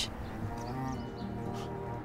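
Background music of a TV drama score: soft, steady held notes.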